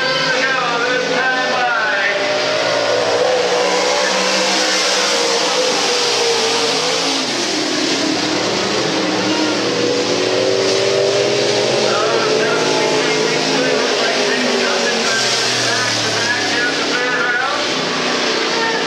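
Dirt-track stock car engines racing, their pitch falling as the drivers lift for a turn and climbing again as they get back on the throttle, with a deep dip and recovery near the middle.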